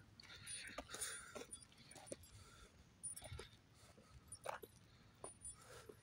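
Faint, slow, uneven footsteps on an asphalt path, a soft tap every half second to second, with little else but quiet background hiss.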